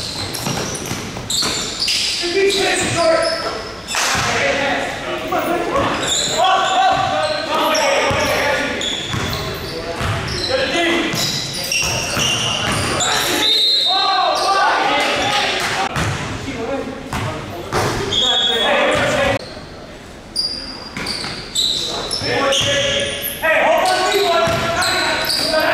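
Basketball game in a gym: a ball bouncing on the hardwood court among players' voices and calls, all echoing in the large hall.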